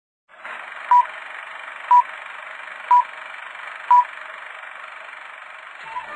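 Four short electronic beeps, one a second, over a steady thin telephone-like hiss, like a countdown or time signal.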